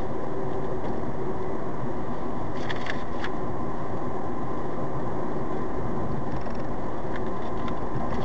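Steady road and engine noise of a car cruising on a highway, heard from inside the cabin, with a few faint clicks about three seconds in.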